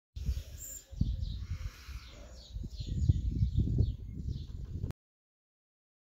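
Small birds chirping in short, repeated falling notes over a heavy, gusting low rumble of wind on the microphone; the sound cuts in just after the start and cuts off suddenly about five seconds in.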